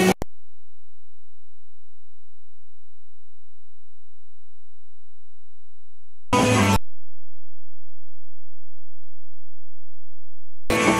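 A steady low hum-like tone at an unchanging level stands in for the band's sound, a recording dropout. About six seconds in, a half-second snatch of live rock band music breaks through, after which the low tone returns with a faint high whine beside it.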